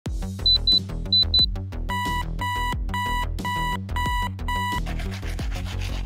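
Bedside alarm beeping over background music: four short, high beeps in two pairs, then six longer, lower beeps about two a second, stopping near the five-second mark.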